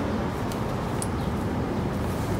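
Steady outdoor street ambience, a low rumble under a hiss, with a couple of faint light clicks about half a second and a second in.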